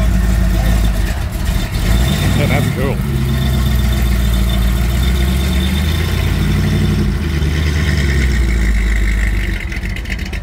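Hot rod roadster's engine running as the car pulls slowly past and away, with a deep, steady exhaust note. The revs rise briefly twice, and the sound fades a little near the end.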